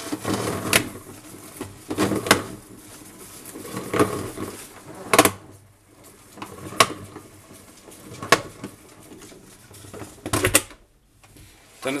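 A plastic salad spinner holding water and laundry being twisted back and forth by hand as a makeshift rinse cycle: sharp plastic knocks roughly every second and a half as the bowl rocks, with water sloshing inside between them.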